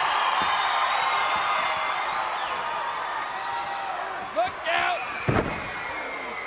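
Arena crowd noise throughout, with one heavy thud about five seconds in as a wrestler is body-slammed onto the ring canvas in a scoop slam.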